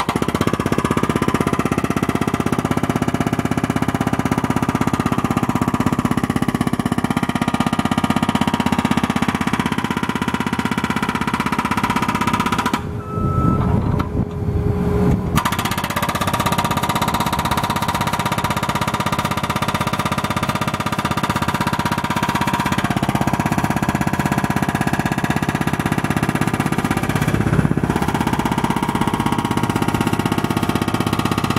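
Hydraulic breaker hammer on a Case SV300 skid steer pounding asphalt pavement: a rapid, continuous rattle of blows over the skid steer's running diesel engine. The hammering stops for a couple of seconds partway through, leaving the engine, then starts again.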